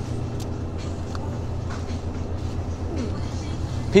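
Steady low hum of a supermarket's background machinery, with a few faint clicks and rustles.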